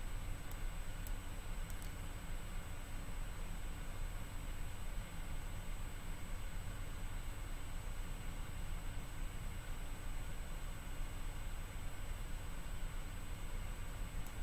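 Steady room tone picked up by a computer microphone: a low rumble and hiss with a thin, constant high tone, broken by a few faint clicks in the first two seconds.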